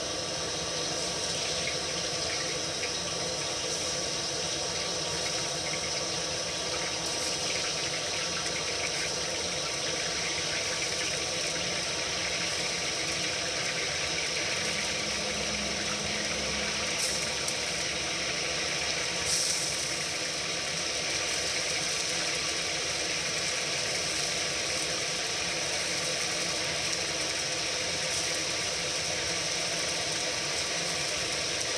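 Flour-battered gurami fish pieces deep-frying in hot oil in a wok: a steady sizzle, with two short clicks about two-thirds of the way through.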